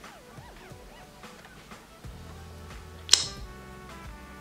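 Soft background music during a pause in speech, a low held bass note coming in about halfway through. A single sharp click a little after three seconds is the loudest moment.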